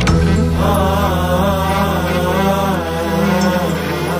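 Instrumental-vocal intro of a mourning elegy: a wordless chanted vocal line with wavering pitch over sustained low drone notes that shift in steps.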